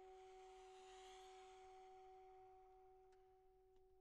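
Saxophones holding two very soft, pure-sounding long notes, one high and one lower, fading slowly. A breathy air noise sits over them in the first couple of seconds, and two faint clicks come near the end.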